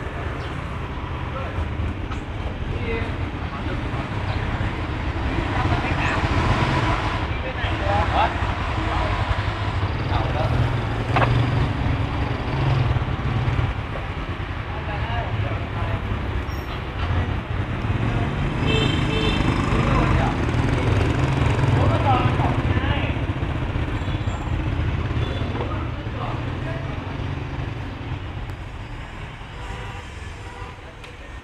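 City outdoor ambience: a steady low rumble of distant traffic that swells and eases, with indistinct voices now and then.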